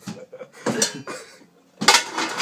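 Metal pots and pans clattering and knocking together as they are shifted about in a cupboard and a saucepan is pulled out, with a loud clang just before the end.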